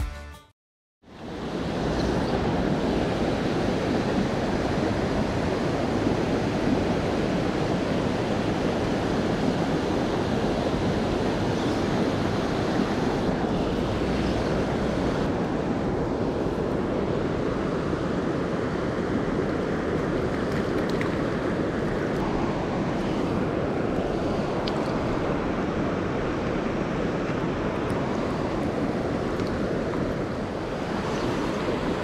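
Steady rushing noise of wind buffeting the microphone over flowing river water, with no distinct events standing out.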